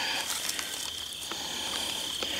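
Insects trilling in one steady high-pitched note, with a few faint rustles.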